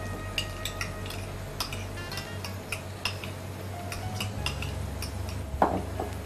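Light, irregular clinks and taps of a utensil against small ceramic dip bowls as sauces are spooned and mixed into a dip.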